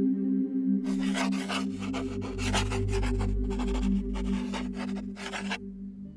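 Pen scratching on paper in a quick run of strokes as a mark is copied by hand; it starts about a second in and stops shortly before the end. A steady ambient music drone plays underneath.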